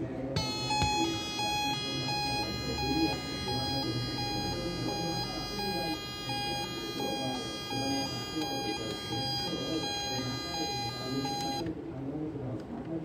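A toy ambulance's built-in electronic siren sounding from its small speaker, switching steadily between a low and a high note, with a buzzy edge. It starts about half a second in and cuts off near the end.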